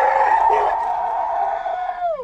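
A woman's long, high scream of fright, held on one pitch and then sliding down as it breaks off near the end.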